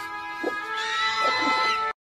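Music with long held notes, over which a meerkat gives a few short squeaky calls. All sound cuts off abruptly just before the end.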